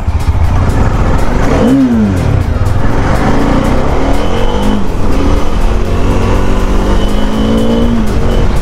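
Motorcycle engine pulling away and accelerating: its pitch rises and then drops at a gear change about two seconds in, then climbs slowly and steadily through the rest, with wind rumbling over the microphone.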